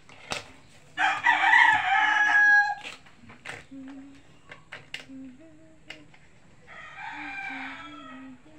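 A rooster crowing twice: a loud crow about a second in lasting nearly two seconds, and a fainter one near the end. Light clicks sound in between.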